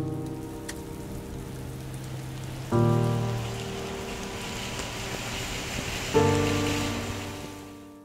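Rain falling steadily under background music: three sustained chords struck about three seconds apart, each slowly dying away, with the rain hiss swelling in the middle before everything fades out near the end.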